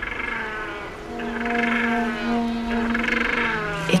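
Macaroni penguin singing its courtship song: one long call of held, pitched notes with a rapid pulsing through it, stopping just before the end.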